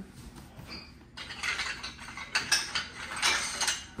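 Rapid clinking and rattling of a stack of ceramic saucers being gathered and lifted out of a box. It starts about a second in and lasts nearly three seconds.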